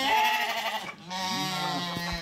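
Romanov sheep bleating: two long calls, the first breaking off just before a second in and the second starting right after.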